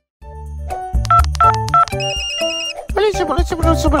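Background music with a steady beat, broken about two seconds in by a short, high, rapidly pulsing phone ringtone. Near the end comes a high-pitched cartoon voice.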